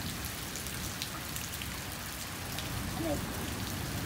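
Steady rain falling, an even hiss with scattered faint drop ticks.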